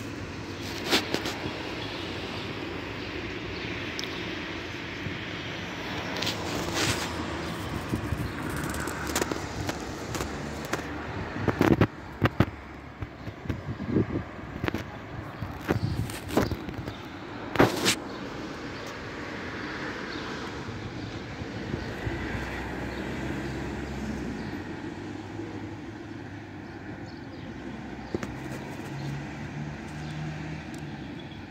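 Steady city traffic noise from surrounding streets, broken by several sharp clicks and knocks, the loudest about 12 and 18 seconds in.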